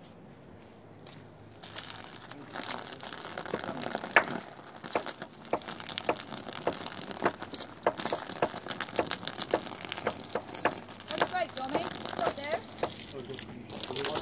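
Water spraying onto woven polypropylene earthbags, wetting the damp-soil fill: a steady hiss with a dense crackling patter that starts about two seconds in.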